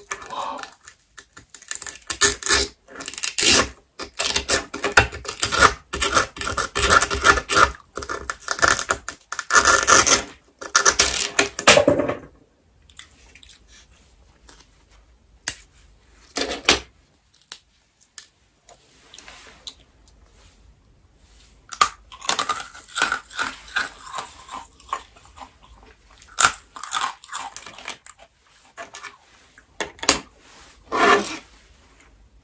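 Dalgona (honeycomb sugar candy) crunching and cracking close to the microphone as it is broken and chewed: dense runs of crisp crackles, with a quieter stretch in the middle broken by a few single clicks.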